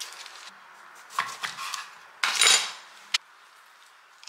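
Kitchen utensils knocking and clattering on a countertop as a knife and a handheld lime squeezer are set down. There are a few light knocks, one louder clatter about halfway, and a single sharp click near the end.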